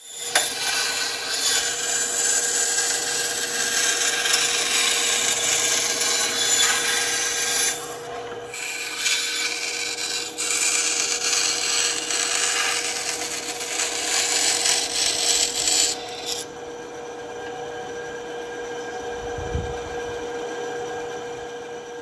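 Benchtop band saw running with a steady hum while its blade cuts through an old plastic dome light housing with a rasping noise. The cutting pauses briefly about eight seconds in. About sixteen seconds in the rasping drops away, leaving the quieter hum of the saw.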